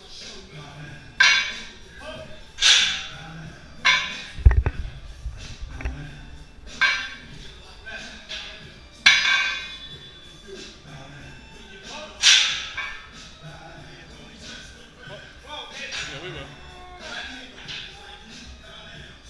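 A loaded trap bar set down on a rubber gym floor with a heavy low thud about four and a half seconds in. Around it come about half a dozen short, loud, sharp sounds a second or more apart, over background music.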